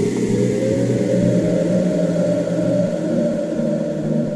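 Electronic ambient music: a sustained low synth drone with a tone that slides upward over the first second and a half, then holds steady.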